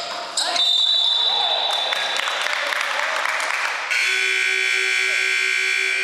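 Gym scoreboard buzzer marking the end of the period: a long, steady electric buzz that starts about four seconds in, as the game clock runs out.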